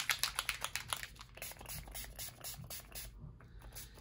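Distress Oxide spray bottle's finger pump being worked repeatedly, a rapid run of short spritzing clicks that thins out and stops about three seconds in.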